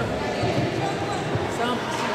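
Indistinct voices of people talking across a large sports hall, with a few low thuds.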